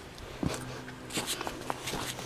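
Footsteps on dry, rocky dirt: a few soft crunches and clicks of loose stones underfoot.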